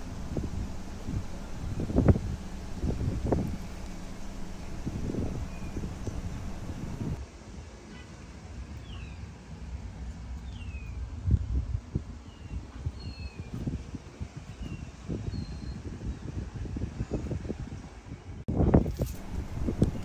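Uneven low rumbling of wind on the microphone, with a low steady hum in the first few seconds. A few short, faint bird chirps come through in the middle.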